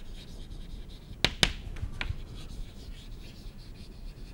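Chalk writing on a chalkboard: faint scratching of the strokes, with a few sharp taps as the chalk strikes the board, two close together a little over a second in.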